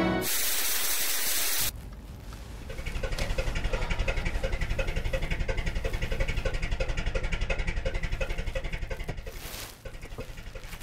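A loud burst of hiss for the first second and a half or so. Then a small car's engine idling with a rapid, even pulsing.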